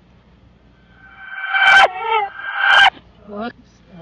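A dog barking, played in reverse so that it sounds freaky: two long, loud barks that swell and then cut off abruptly, followed by a few shorter, quieter ones near the end.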